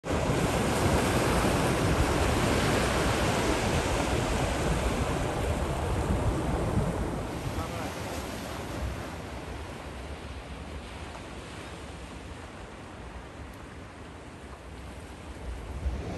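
Sea surf breaking and washing up onto a beach, loudest for the first several seconds, then settling to a quieter wash.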